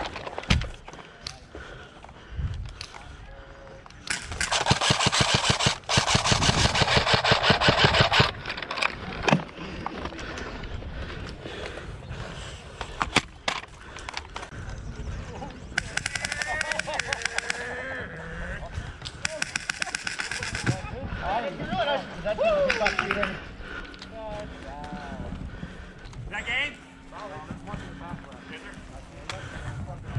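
Airsoft rifle firing long full-auto bursts of rapid clicks. The first burst starts about four seconds in and lasts about four seconds, and a second long burst comes past the middle, followed by shorter bursts.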